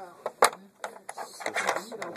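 A sharp click about half a second in, then a few softer taps and clicks: metal dissecting tools and gloved hands knocking against a plastic dissecting tray.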